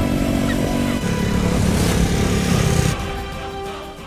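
Background music with a motorcycle engine running beneath it as the bike passes; both fade down about three seconds in. The motorcycle is a BMW G310 GS, whose engine is a single cylinder of about 313 cc.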